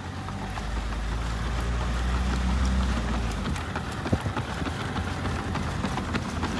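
Low engine and road hum of a car rolling slowly alongside a runner, fading about three and a half seconds in. Through it come the footfalls of a runner weighed down by a heavily loaded pack, landing on the pavement.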